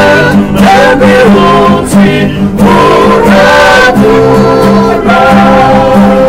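A group of men singing together in harmony, accompanied by two acoustic guitars strummed in a steady rhythm.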